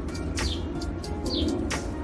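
Small birds chirping in short, falling chirps about once a second, with a few sharp clicks in between.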